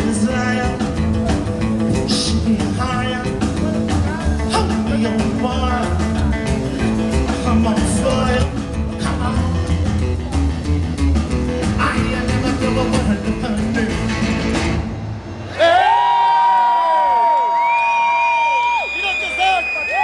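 Live rockabilly band of upright bass, acoustic guitar and drums playing an instrumental stretch of a song. About three-quarters of the way in the music stops and gives way to crowd shouts and long, high whistles.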